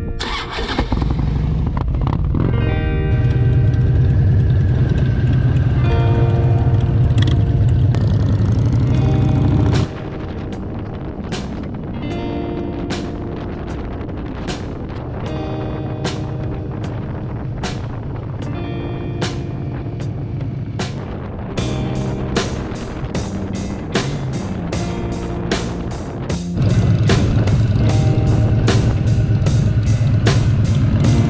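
A Harley-Davidson V-twin engine starts right at the beginning and runs with a steady low rumble, under background music. About ten seconds in the engine sound drops back while the music carries on. A steady beat joins the music about 21 s in, and the engine rumble is loud again for the last few seconds.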